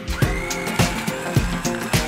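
Food processor motor starting up and running, a whine that rises just after the start and then holds steady, as it blitzes a thick nut-and-breadcrumb mixture. Background music with a steady beat plays over it.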